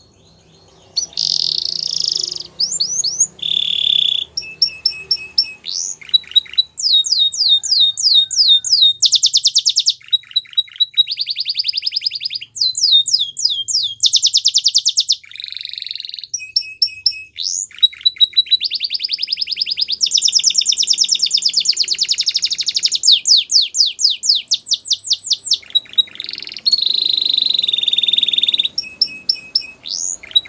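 Domestic canary singing a long, high-pitched song made of rapid trills. Each run of quickly repeated notes lasts a second or two before it switches to a different one. The song starts about a second in.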